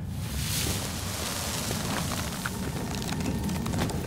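A steady rumbling, hissing sound-effect bed from an animated sword duel, with a few faint crackles.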